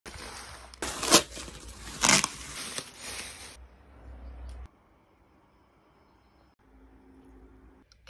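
Cardboard box and packaging handled and rustled, with two loud scrapes about a second apart, then a quieter stretch of handling that dies away to near silence.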